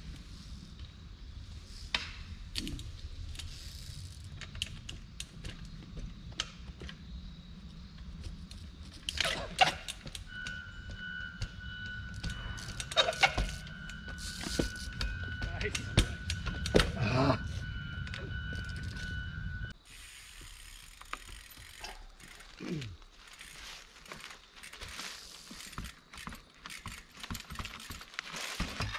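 Trials bike being hopped and balanced on rock, with scattered sharp knocks and clicks from the tyres, rims and brakes landing and grabbing, over a steady low rumble. A steady high whine runs from about ten seconds in until a sudden change near twenty seconds, after which the knocks are sparser and quieter.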